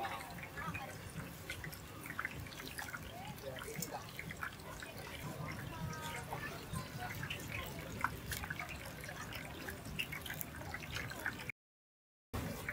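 Hot oil sizzling and crackling in a wok as banana fritters deep-fry, over background chatter, with light clicks of metal tongs. The audio cuts out briefly near the end.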